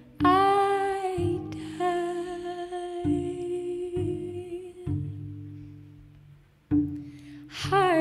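A woman singing a slow jazz ballad in long held notes with vibrato, over low cello notes that each ring and die away. The music thins to a near pause about six seconds in, then a new low cello note comes in.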